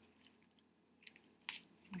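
Faint crinkling and a few small clicks of a folded paper-napkin fan and thin floral wire being handled as the wire is wrapped around the fan's middle.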